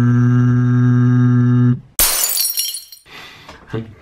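A long steady held note cuts off just before two seconds in. It is followed at once by a sudden loud crash, like something shattering, that rings on for about a second. A voice starts up near the end.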